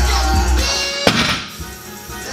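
Background music, with one heavy thud about a second in as a loaded barbell with rubber bumper plates lands on the gym floor after a deadlift.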